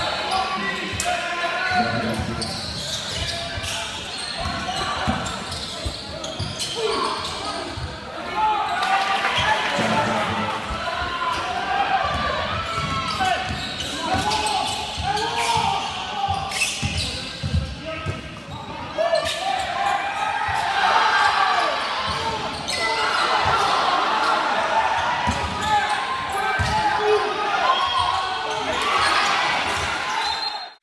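Basketball being dribbled on a hardwood gym court, with repeated ball bounces amid shouting from players and spectators, all echoing in the hall.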